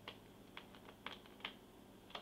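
Sheets of a scrapbook paper pad being flipped one after another, each page giving a faint, short flick: about five in two seconds.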